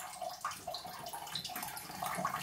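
A Bengal cat urinating into the water of a toilet bowl: a continuous, uneven trickle of liquid.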